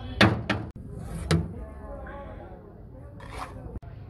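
Sharp knocks of a metal utensil against a large pot of pulao as it is scooped: three in the first second and a half and a weaker one later, over people talking.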